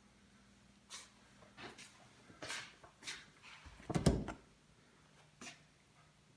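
Faint scattered rustles and light knocks, with one louder dull thump about four seconds in: handling and movement noise around the vinyl soft top and door.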